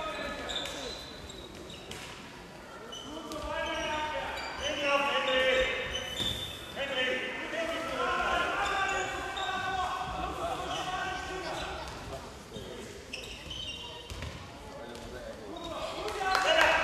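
A handball bouncing on a sports hall floor amid indistinct shouts from players and spectators, echoing in the large hall.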